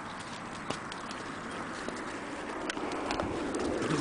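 A horse close at hand licking its lips and shifting about: a few sporadic soft clicks over a steady low noise that grows a little louder near the end.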